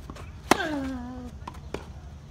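A tennis racket strikes the ball hard about half a second in, with a grunt from the hitter that falls in pitch over most of a second. Fainter pops of the ball bouncing and of the practice partner's return come afterwards.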